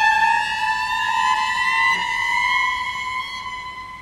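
A cello holding one high bowed note that slides slowly upward in pitch, then fades away near the end.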